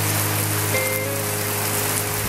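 Rain pouring down steadily, with a song's long held notes playing over it and no singing.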